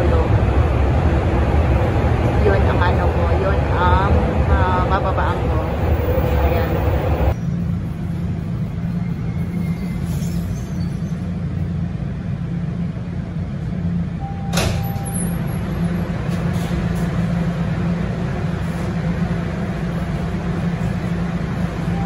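Toronto subway train heard from inside the car, running loud with rumble and rattle. About seven seconds in it drops suddenly to a quieter, steady low hum, with a single sharp click partway through.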